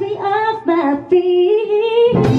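A woman singing a short vocal phrase alone, with the band dropped out under her. She sings a few held notes with slides between them.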